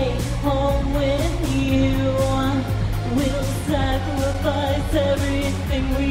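A woman singing a gothic electronic song over a backing track with a steady beat and sustained bass.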